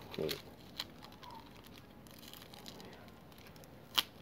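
Crinkling and rustling of a thin protective wrapping being peeled off a coconut shell, with a few small clicks and a sharp snap just before the end.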